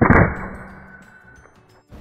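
Crosman Vantage .22 break-barrel air rifle firing a single shot: a sharp report that rings on with a high and a low tone and fades over about a second and a half.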